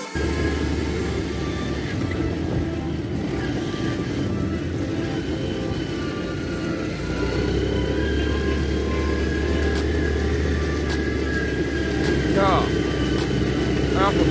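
Quad bike (ATV) engine running as it is ridden along a sandy trail, under a heavy rumble of wind on a phone microphone; the rumble grows louder about halfway through.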